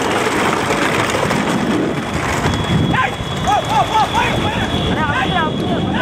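A run of short, rising-and-falling shouted calls, coming quickly one after another in the second half, over a steady wash of motorbike engine and wind noise beside racing bullock carts.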